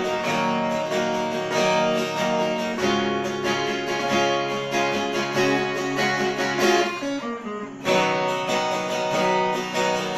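Two acoustic guitars playing together in an instrumental passage, one strumming chords while the other picks a melody over them. The playing thins out briefly about seven seconds in, then comes back full.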